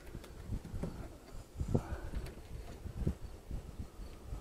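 A few light, irregular knocks and handling noise as hands work at the van's door pillar and its trim.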